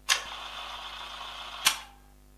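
Camera sound effect: a steady mechanical whir about one and a half seconds long, ending in a sharp click, like an instant camera ejecting its print.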